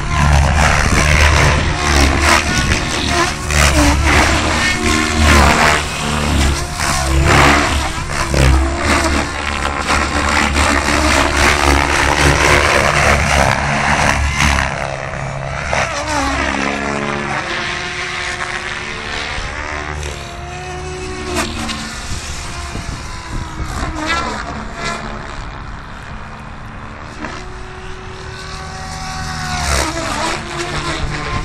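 Goblin 700 radio-controlled helicopter flying 3D aerobatics: loud rotor-blade noise with a low pulsing buzz that swells and fades through the fast manoeuvres. About halfway through it grows fainter, leaving a whine that bends in pitch as the helicopter climbs high.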